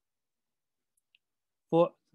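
Near silence with a single faint short click about a second in, the kind a computer click makes when advancing a presentation slide; speech resumes near the end.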